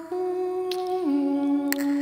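Woman's solo voice singing a wordless, hummed melody in long held notes, the pitch stepping down about a second in, punctuated twice by sharp clicks of the tongue, so that the one voice sounds as a duet of hum and click.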